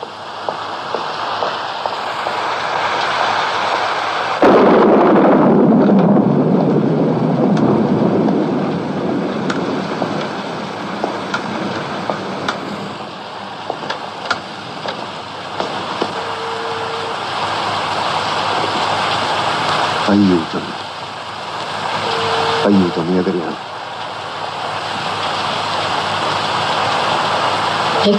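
Steady heavy rain with a sudden loud clap of thunder about four seconds in that rumbles on for several seconds, then eases back to the rain. Late on there are two short spoken sounds and two brief steady tones.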